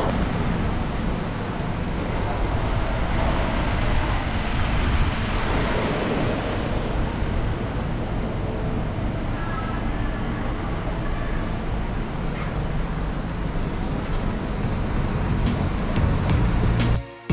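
Steady outdoor background noise with a strong low rumble, like wind on the microphone and road traffic. A run of short sharp clicks starts near the end and quickens.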